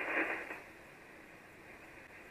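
Icom IC-706MKIIG transceiver receiving 75-metre single sideband between transmissions. A short rush of static dies away about half a second in, leaving the receiver's faint steady band hiss, thin and cut off high as by a narrow SSB filter.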